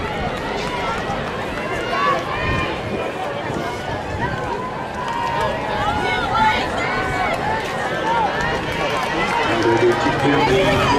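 Spectators' voices chattering and calling out over one another in the stands, a steady babble with no single clear voice.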